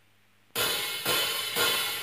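Drum count-in on a cymbal for a backing track: three sharp cymbal strikes half a second apart, each ringing briefly, starting about half a second in after near silence.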